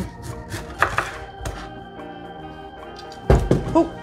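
Chef's knife cutting down through pineapple onto a wooden cutting board, a few sharp knocks in the first second and a half, then a loud thump a little past three seconds as the pineapple piece is dropped. Background music plays throughout.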